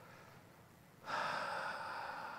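A man's long, deep breath close to a lapel microphone, starting suddenly about a second in and slowly tapering off, taken during a guided breathing pause.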